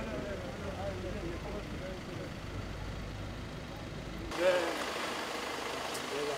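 A parked van's engine idling with a steady low rumble under people talking; about four seconds in the rumble cuts off abruptly and an outdoor sound bed with voices follows, with one brief loud exclamation.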